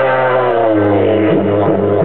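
Wooden didgeridoo played live: a steady low drone with a stack of overtones that glide and shift, turning into a pulsing rhythm in the second half.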